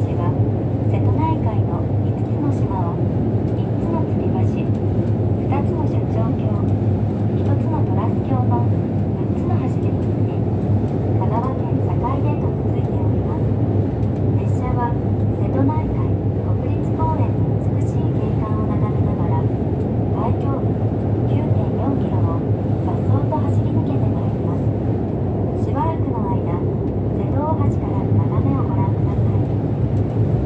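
Steady low rumble of a train running over a steel truss bridge, heard inside the carriage, with faint indistinct voices over it.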